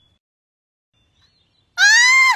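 Near silence, then near the end a person's shrill scream of pain, "Ah!", rising and then falling in pitch.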